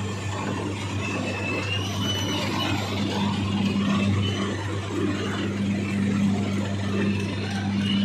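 Steady low hum of a sugar mill's cane-yard machinery and tractor engines running, with a faint high whine about a second in.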